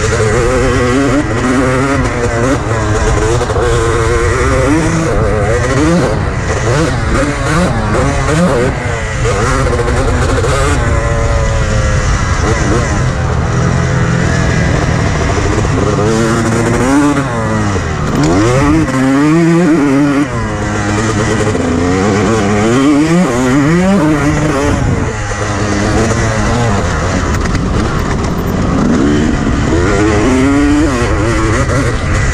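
Honda CR250 two-stroke motocross engine revving hard under load, its pitch climbing and dropping again and again as the rider works through the gears. Near the middle it drops low, then winds back up.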